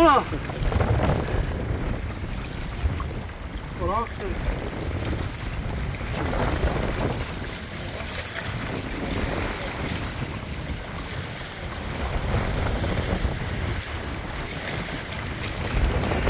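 Wind buffeting the microphone over small waves lapping against the rocks at the water's edge, a steady rumbling wash.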